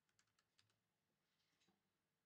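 Near silence with a handful of faint computer keyboard clicks, most of them in the first half second.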